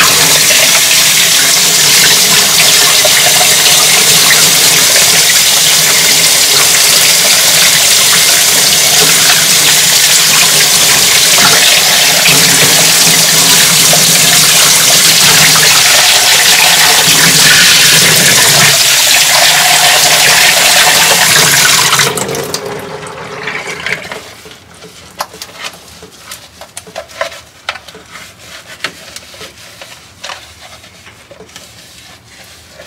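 Faucet running hard into a plastic utility sink, the water splashing over a vacuum cleaner's plastic dust canister as it is rinsed by hand. The tap is shut off about 22 seconds in, leaving scattered light clicks and knocks as the wet canister is handled.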